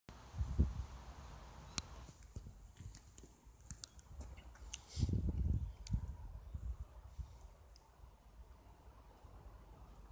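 Faint handling noise from a handheld camera: low rumbles about half a second in and again around five seconds, with scattered small clicks.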